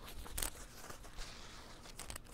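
Faint handling noise: a short rustle or rub about half a second in as a plastic phone case is wiped clean, then quiet, low rubbing.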